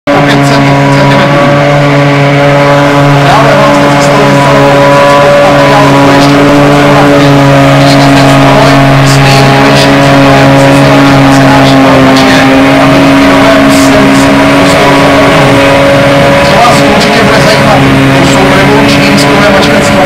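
John Deere 8600i self-propelled forage harvester working under load, picking up and chopping a grass windrow and blowing it into a trailer. Its engine and chopping drum make a loud, steady drone with a constant deep hum. The tractor pulling the trailer alongside runs with it.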